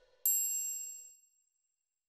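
A single bright, high-pitched electronic ding, struck about a quarter second in and ringing out to nothing within about a second and a half. It is the outro chime of a logo sting.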